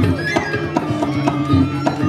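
Balinese gamelan ensemble playing dance accompaniment: metallophone tones ring over a steady beat of drum and percussion strokes, nearly three a second.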